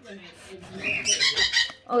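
Pet parrots chirping and calling, mostly about halfway through.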